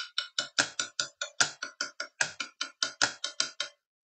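Quick, even percussive taps, about seven or eight a second, beating out a cuartina rhythm of four sixteenth notes to each beat. They stop shortly before the end.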